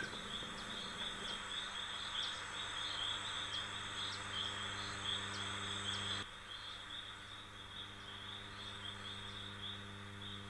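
Faint forest ambience: a steady, high, pulsing insect trill with short chirps about twice a second, over a low steady hum. The background steps down abruptly about six seconds in, where the sound track is cut.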